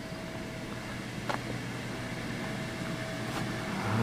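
Snow foam machine's blower running steadily, a continuous hum with a thin steady whine, as it shoots foam flakes. Two short clicks sound, about a second in and near the end.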